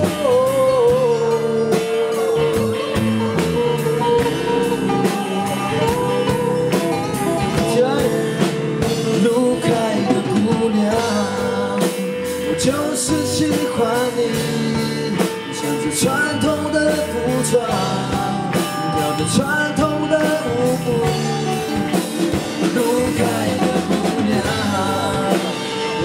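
Live rock band music: electric guitars and a drum kit with its cymbals keeping time, and a man singing into a microphone over them.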